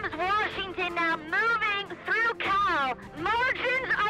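A woman's voice shouting excitedly in short, high-pitched bursts, one after another, the way race calls are shouted.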